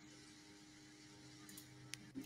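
Near silence: a faint steady electrical hum on the call audio, with a tiny click near the end.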